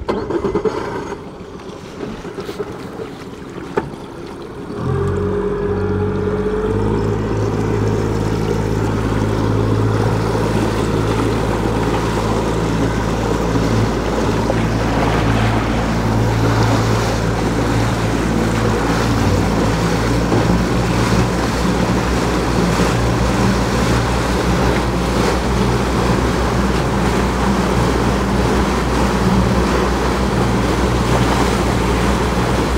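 Wind and water splash for the first few seconds. About five seconds in, the boat's engine comes in loudly and runs at a steady drone under way, with the rushing of the wake over it.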